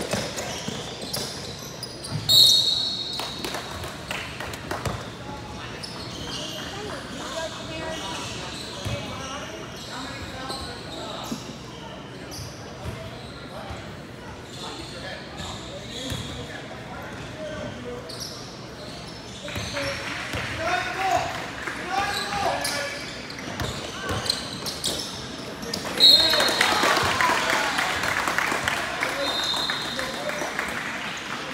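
Basketball game in a large reverberant hall: a ball bouncing on the tile court amid players' and spectators' voices. A referee's whistle sounds about two seconds in and again near the end, when the crowd's shouting grows louder.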